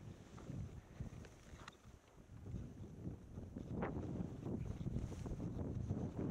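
Wind buffeting the microphone of a camera carried by a skier moving downhill, growing louder about halfway through, with a few short scraping sounds.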